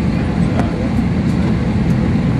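Steady low droning hum in the cabin of an Airbus A321 standing still at the gate.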